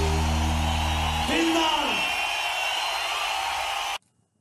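Live band holding a final sustained chord that stops about a second in, then a voice calling out with a falling pitch over a large festival crowd cheering, which cuts off suddenly at the end.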